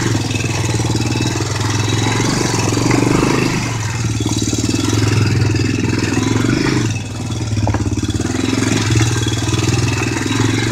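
ATV engine running as it rides over rough woodland ground, its note rising and falling with the throttle, easing briefly about seven seconds in.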